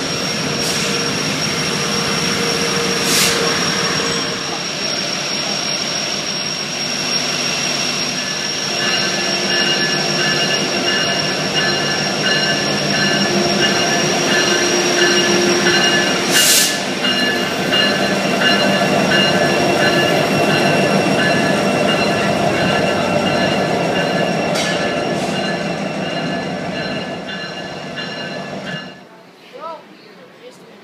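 Train cars rolling past at close range, a steady rumble with a high, steady wheel squeal and a few sharp clacks. The sound cuts off abruptly about a second before the end.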